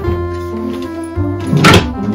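Background music with a steady low note; near the end, a single hard clunk as the front panel of a wooden under-bed drawer comes away from the drawer.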